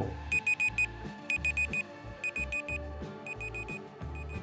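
Countdown-timer beeping like a digital alarm clock: quick bursts of four short high beeps, repeating about once a second, over background music with a steady low bass.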